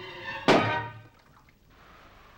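Orchestral film music breaks off, and about half a second in a single sudden, loud crash hits and dies away within about half a second, a dramatic sting in the soundtrack.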